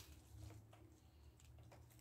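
Near silence: faint background with a low hum.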